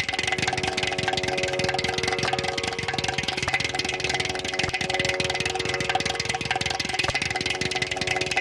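Ghatam (South Indian clay pot drum) played with fast, dense strokes of the hands and fingers, its ringing pot tones over a steady drone.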